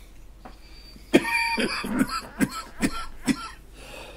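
A man's coughing fit: about six short coughs in quick succession, starting about a second in.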